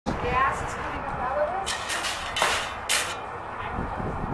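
Indistinct voices talking, with three short loud hissing bursts in the middle of the clip over a steady low rumble.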